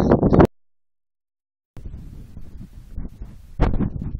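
A voice cut off by a moment of dead silence at an edit. Then faint wind noise on a phone microphone outdoors, with a louder gust buffeting the microphone near the end.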